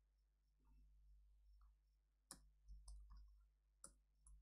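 Near quiet with a few faint, sharp clicks of a computer keyboard and mouse as a document is edited, the two clearest a little after two seconds in and near the end.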